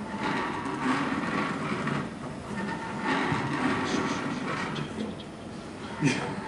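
Mechanical jellyfish automaton running: its cams, shafts and acrylic rings clatter and rattle in repeated surges, with a faint steady tone underneath.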